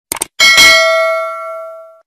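Subscribe-button animation sound effect: a quick double mouse click, then a notification-bell ding that rings with several tones and fades away.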